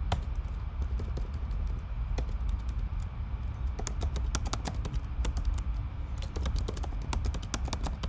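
Typing on a computer keyboard: rapid, irregular key clicks throughout, over a low steady hum.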